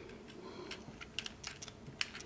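Faint, scattered clicks of hard plastic toy parts being handled as the wheel of a DNA Design DK-14 leg upgrade on a Transformers Siege Ultra Magnus figure is swung around into place. The clicks come a few at a time, mostly in the second half.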